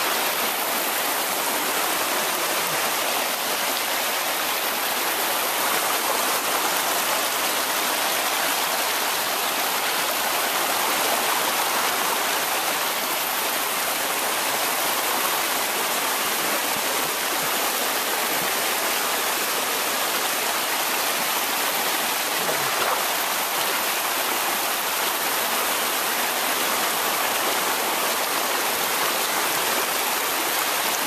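Muddy brown floodwater rushing over loose stones down a lane that has become a torrent: a steady, even rush of water with no let-up.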